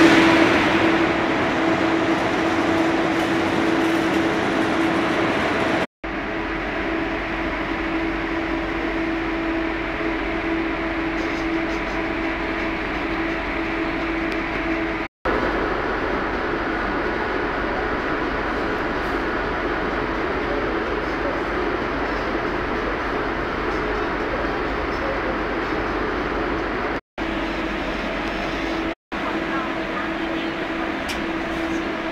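Steady running noise of the KLIA Ekspres airport train heard inside the carriage, with a constant hum under it. It drops out briefly to silence four times.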